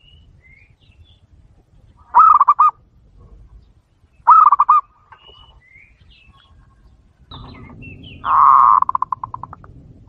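Zebra dove (perkutut) cooing: two short coos made of quick pulses, then a longer, louder coo about eight seconds in that ends in a fading run of rapid pulses.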